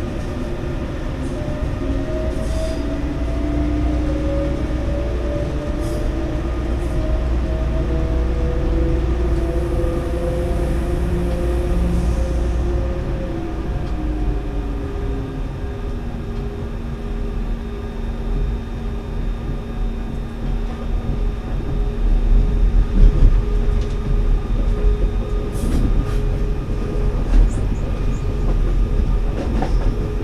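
Electric train running on the line: a steady rumble of wheels on track under a whine whose tones glide in pitch during the first half, then hold steady. In the last third the running gets rougher and louder, with uneven knocks as the wheels pass over points.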